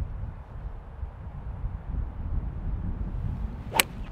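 A single sharp crack about a second before the end as a three-wood strikes a golf ball cleanly, a well-struck shot. Under it, a low steady rumble.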